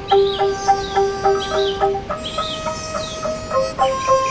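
Angklung music: shaken bamboo tubes sounding a slow melody in pulsing, sustained notes, stepping up to higher notes about two seconds in. Birds chirp over the music.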